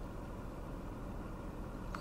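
A steady, faint low rumble with no distinct events.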